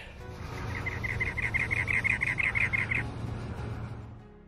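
Cactus wren singing: a fast run of repeated notes, about eight a second, lasting a little over two seconds, over soft background music.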